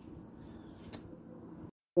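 Faint background room noise with one small click about halfway through, then a drop to dead silence for a moment just before the end, where two clips are joined.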